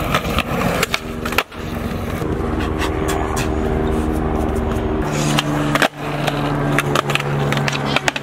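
Skateboard wheels rolling on concrete with a steady hum, broken by sharp clacks of the board's tail popping and landing, thickest near the end. The rolling drops out briefly twice.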